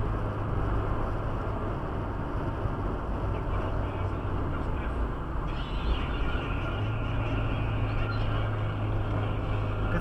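Steady road noise of a car travelling at about 85 km/h, heard inside the cabin: tyre rumble on asphalt over a low, even engine hum. The hiss of the tyres grows a little stronger about five and a half seconds in.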